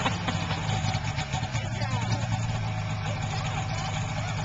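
Small youth snowmobile engine idling steadily while the machine stands still.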